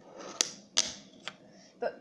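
Fingerboard clacking on a wooden tabletop: two sharp clicks about half a second apart, then a fainter third, as the board is popped and hits the table.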